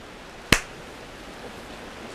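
A single sharp click about half a second in, over a steady background hiss.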